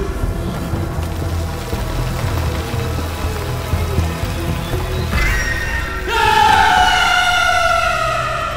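Horror film score: a low rumbling drone, joined about five to six seconds in by louder high sustained notes that slowly slide down in pitch.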